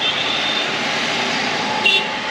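Highway traffic passing close by: the steady rush of a truck, cars and motorcycles driving past. A brief high-pitched sound comes just before the end.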